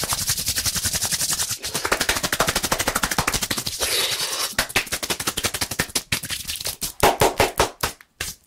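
Rapid hand claps and palm pats right at a microphone, many sharp strokes a second, turning to fewer, louder claps near the end.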